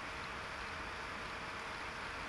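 Steady background hiss with a faint hum, unchanging and with no distinct sound events.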